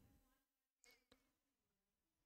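Near silence: room tone, with a faint sound fading out at the start and two tiny brief sounds about a second in.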